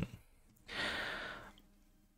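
A man's audible breath out, a sigh lasting under a second, in a pause between words.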